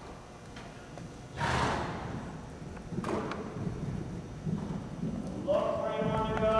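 Horse cantering on the sand footing of an indoor arena, its hoofbeats muffled thuds. A louder rushing burst comes about a second and a half in, with a smaller one near three seconds. A held pitched call begins near the end.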